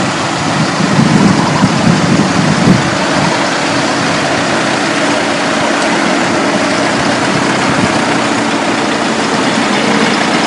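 A car on the road, its engine hum under a loud, steady rush of wind and road noise.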